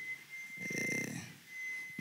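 A man's short, throaty exhale into a close microphone, lasting under a second, over a faint steady high-pitched whine.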